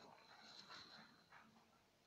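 Near silence: room tone, with a few faint short sounds in the first second or so.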